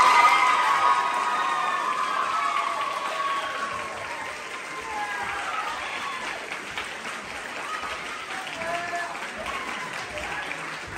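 Audience applauding, loudest at the start and tapering off over the first few seconds, with voices heard over the clapping.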